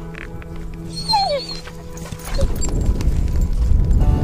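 Background music with steady tones, over which a dog gives a short falling whine about a second in. A low rumbling noise grows louder in the second half.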